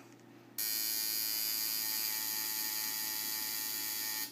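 Coil tattoo machine buzzing steadily as its needle works into the peel of an orange; it starts about half a second in.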